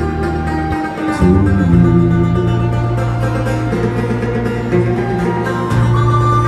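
Live acoustic band playing an instrumental passage between sung lines: banjo, acoustic guitar and electric bass guitar, the bass holding low notes that change about a second in and again near the end.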